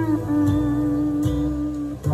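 Clinesmith frying-pan electric lap steel guitar in B11 tuning: a chord slid down with the steel bar at the start, then held and left to ring.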